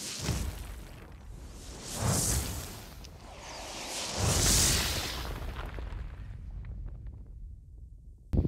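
Movie-style explosion sound effects: three whooshing blasts roughly two seconds apart, the last the loudest, each trailing into a low rumble that dies away toward the end.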